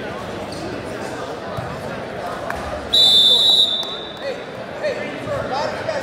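A referee's whistle blown once, a short steady blast of under a second about halfway through, loud over the murmur of crowd chatter in a gymnasium.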